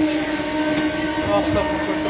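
Local train running, heard from inside the coach: a steady rumble of the moving carriage with a long, held droning tone over it.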